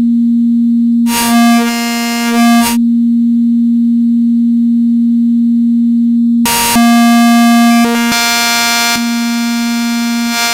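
Harvestman Piston Honda Mk II wavetable oscillator holding one steady pitch while its waveform is swept through the wavetables. The tone switches between a bright, buzzy timbre and an almost pure, sine-like hum, turning bright again about six seconds in and changing colour from there on.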